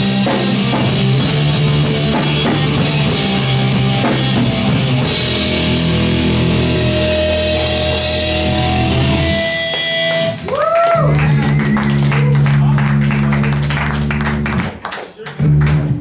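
Live rock band playing loud in a small room: distorted electric guitar, bass and drum kit with steady cymbal hits. The playing dips briefly about ten seconds in, comes back, then breaks off into a few last hits near the end.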